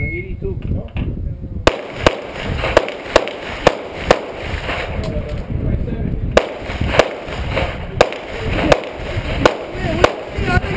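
A string of about a dozen pistol shots, mostly fired in quick pairs about half a second apart, with a pause of about two seconds partway through. Wind rumbles on the microphone underneath.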